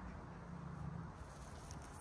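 Quiet outdoor background: a faint, steady low hum with no distinct sounds.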